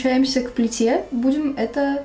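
A woman speaking, with no other sound standing out.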